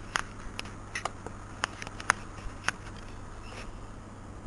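About a dozen sharp, irregularly spaced clicks over a steady low hum.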